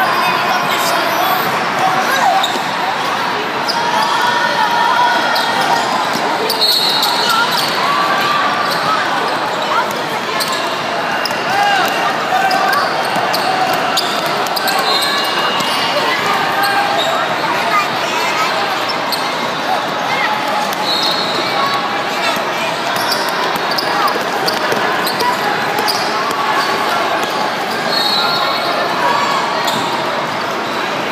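A basketball bouncing on the court during play, with the hubbub of many voices from players and spectators echoing through a large hall.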